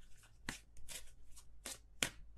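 Tarot cards being shuffled by hand: a few faint, brief card flicks and taps.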